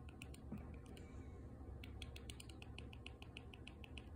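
Faint, rapid clicking as a remote steps the highlight across a TV's on-screen keyboard: a few clicks, a short pause, then a quicker run of about five or six a second from about two seconds in.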